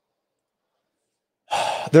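Dead silence for about a second and a half, then a man's sigh into the microphone, which runs straight into speech.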